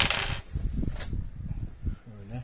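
Hands handling a small metal bench lathe: a sharp metallic click with a short rattle at the start, then lighter clicks and low knocks of parts being moved.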